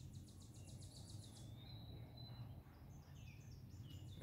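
Near silence: faint outdoor background with a steady low hum, and a bird's rapid high trill through the first second and a half.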